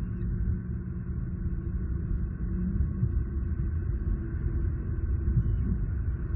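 Steady low rumble of outdoor background noise on a nest-cam microphone, fluctuating but with no distinct events and no bird calls.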